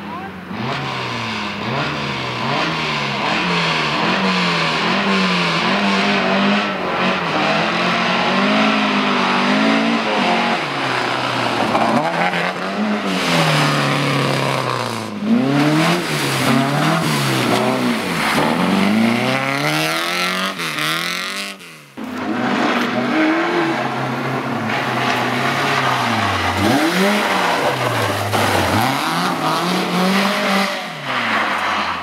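Rally cars driven hard on a loose gravel stage: engines revving up and dropping back over and over through gear changes and lifts, with some tyre squeal and gravel noise. The sound breaks off abruptly at cuts between cars, once with a short drop about 22 seconds in.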